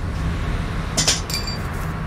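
A metal tool clinks against metal about a second in, a sharp clink with a short high ringing, over a steady low hum.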